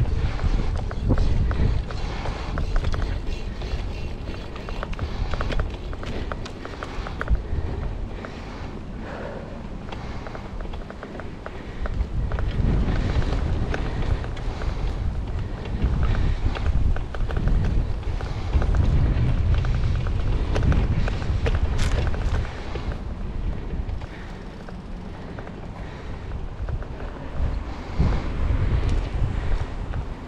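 Wind buffeting the microphone of a bicycle-mounted action camera while riding, a low rumble that surges and eases several times, with tyre noise and small clicks and rattles from the bike rolling over a rough dirt surface. One sharp click stands out about two-thirds of the way through.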